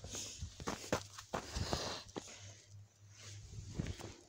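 Footsteps crunching through snow and brush, an uneven run of steps with a few sharper clicks among them.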